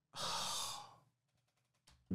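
A man sighing: one heavy exhale lasting under a second, close to the microphone, followed by a faint tick near the end.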